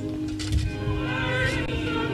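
Hymn music: voices singing with a wavering vibrato over a steady, sustained accompaniment.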